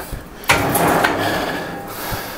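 A single sharp metallic knock about half a second in, fading out over the next second and a half: a cable machine's weight stack being set down as a set of rope triceps pushdowns ends.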